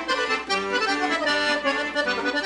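Accordion playing a lively polka tune without singing, with melody and chords together and notes changing several times a second.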